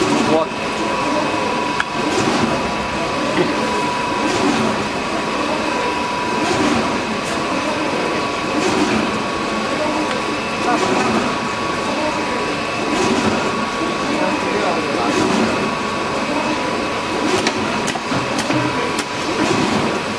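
Paper straw making machine running steadily, a constant hum with a thin high whine and a faint knock about every two seconds, while its non-stop paper-feeding unit splices in a new paper roll automatically.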